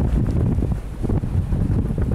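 Gusty storm wind buffeting the microphone: a loud, uneven low rumble, with a brief lull a little under a second in.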